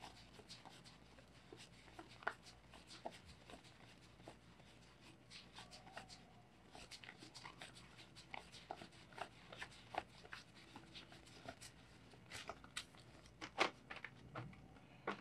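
Paper Philippine 20-peso banknotes being sorted by hand, rustling and crinkling with many small crisp flicks as notes are fingered through the bunch. There are a few louder snaps near the end, as the notes are squared into a stack.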